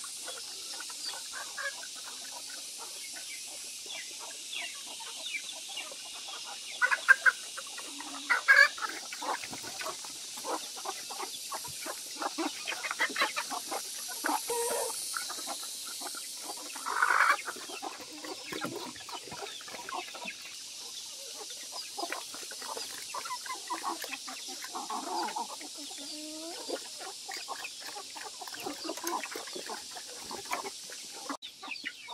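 Chickens clucking a few times, over a steady run of small clicks from black pigs feeding at a wooden trough.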